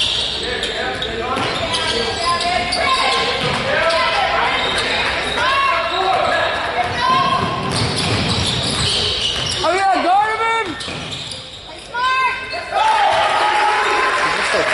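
Basketball being dribbled on a hardwood gym floor and players' sneakers squeaking as they run, with a cluster of sharp squeaks about ten seconds in and another about twelve seconds in. The sounds echo in the gym, over people talking.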